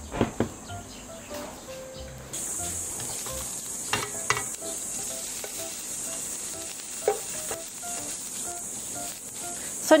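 Strips of imitation crab and ham sizzling in a little oil in a nonstick frying pan as they are stir-fried, with a steady frying hiss and a few sharp clicks of a slotted spatula against the pan.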